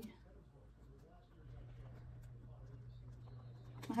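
Quiet pen-on-paper writing with faint scratches and taps, and a steady low hum that comes in about a second and a half in.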